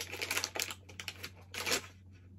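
A foil blind-bag wrapper crinkling and crackling in the hands as it is opened and a small vinyl figure is pulled out, with a louder crackle near the end.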